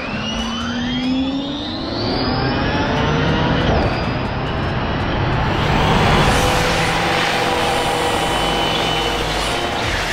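Ford Mustang Cobra Jet 1400 all-electric drag car: a whine from its electric drive rises in pitch over the first few seconds, then gives way to a loud, dense rush of spinning, smoking tyres with a few steady high tones through it.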